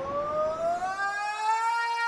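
A siren-like wail, a single tone with a few overtones, rising steadily in pitch for about a second and a half and then levelling off, heard alone in a short gap where the music has dropped out.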